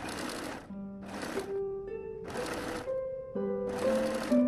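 Domestic electric sewing machine stitching in four short runs of about half a second each, stopping between them, over background music.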